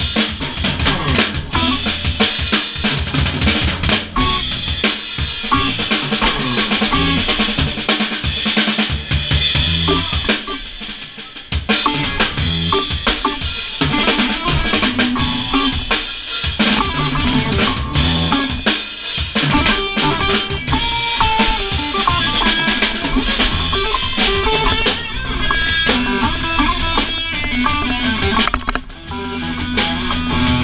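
Live electric blues band playing: the drum kit is loudest, with kick, snare and rimshots driving the rhythm under electric bass and electric guitar. The level dips briefly about eleven seconds in and again near the end.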